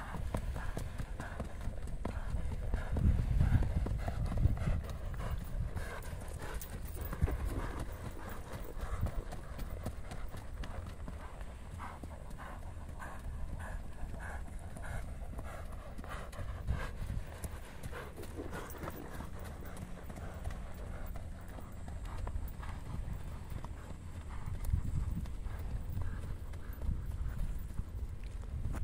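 Hooves of a ridden horse striking a dry dirt track in quick, even hoofbeats.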